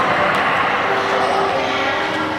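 Several people's voices talking at once in a large hall with a hard stone floor, with a few footsteps on the floor.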